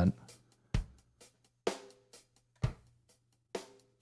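Four-on-the-floor drum loop played from a Roland SP-404 MK2 pad: a sample recorded at double speed and played back an octave down, so it plays at normal pitch and tempo. Drum hits come about once a second with lighter hi-hat ticks between them. It sounds a little fuller, having lost some of its high end.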